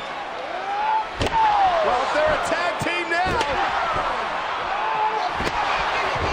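Steel folding chairs striking a downed wrestler in a wrestling ring: a few sharp metal impacts about two seconds apart, the first about a second in, over a cheering and shouting arena crowd.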